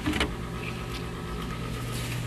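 A steady low mechanical hum, with a short plastic knock just after the start as a plastic milk jug and cup are handled.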